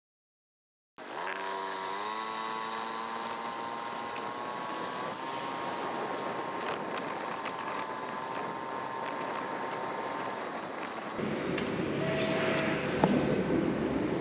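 Small motor scooter engine starting about a second in, its whine rising as it speeds up and then holding steady at cruising speed, with road and wind noise. About eleven seconds in the sound changes to a quieter indoor mix with a short beep.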